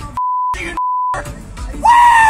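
Two steady, high-pitched censor bleeps, each about a third of a second long, cover a man's shouted slurs, with a brief snatch of his shouting between them. Near the end a loud tone starts and slides down in pitch.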